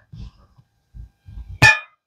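A few soft, short low thumps, then one sharp click about one and a half seconds in.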